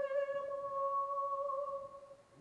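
An operatic tenor holding one long, steady high sung note with little vibrato, which fades out near the end.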